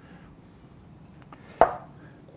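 A glass mixing bowl set down on a wooden butcher-block cutting board: one sharp knock with a short ring, about one and a half seconds in.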